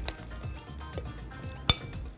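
A metal spoon stirring a wet herb-and-spice mixture in a glass bowl, scraping and lightly clinking against the glass, with one sharp clink near the end.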